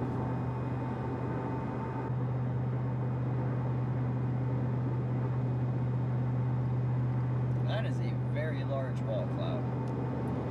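Steady road and engine noise heard inside a truck's cab while it drives at highway speed, a low drone with tyre hiss that grows a little louder about two seconds in. Near the end a few short, faint warbling sounds come through.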